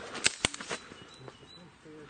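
Two sharp clicks close together near the start, a few weaker ones after, then a quieter stretch with faint high chirps.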